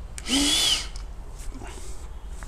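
A short, forceful rush of breath through a handheld spirometer's mouthpiece and tube, lasting about half a second, with a thin whistle over it and a brief catch of the voice.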